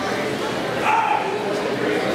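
Background chatter of a crowd of spectators, with one brief high-pitched voice call about a second in.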